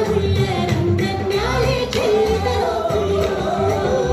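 A Kannada folk song for a kolata stick dance: a voice singing a melody over continuous instrumental accompaniment.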